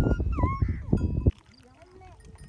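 Outdoor sound beside a herd of resting cattle: a loud, rough rumbling noise with a couple of short, high, falling calls. It cuts off abruptly about a second and a half in, leaving only faint sounds.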